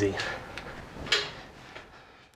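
A single sharp knock about a second in, with a few fainter clicks around it: hard parts being picked up and handled at the workbench.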